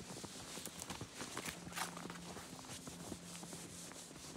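Irregular crunching and scraping of snow and creek ice as a person moves over it.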